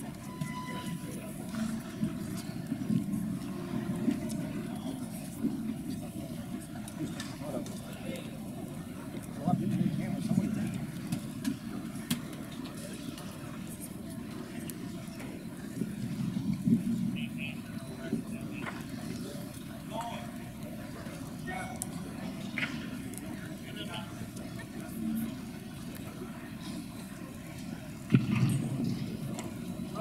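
Indistinct background voices and hubbub echoing in a large hall, swelling louder a few times with nearby talk, with a few scattered faint clicks.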